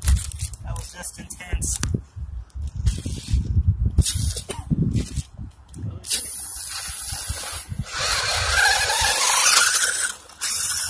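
Electric motor and gearbox of a cheap HB 1/10 scale RC rock crawler whining as it climbs out of a crack in dry dirt, with irregular knocks and scrapes of tyres and crumbling earth. In the last couple of seconds the whine grows louder and rises in pitch over a hissing scrape.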